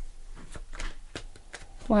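Tarot cards shuffled by hand: an irregular run of crisp little card clicks.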